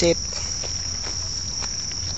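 Evening insect chorus: a steady, high-pitched trill that never breaks.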